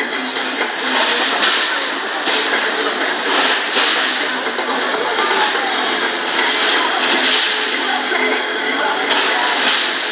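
Music over the arena PA mixed with a loud, steady whirring din from heavyweight combat robots moving in the arena.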